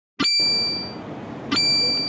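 A small bell-like chime struck twice, about a second and a half apart, each ring dying away within half a second, over a low steady background hum.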